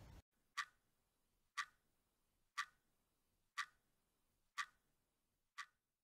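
Clock-ticking sound effect: six crisp ticks, one a second, over dead silence.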